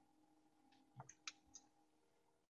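Near silence over a faint steady hum, broken by three faint short clicks between about one and one and a half seconds in.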